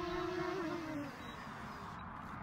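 Small camera drone's propellers buzzing at a steady pitch, then dropping in pitch and fading about half a second in as the motors slow, over a steady hiss.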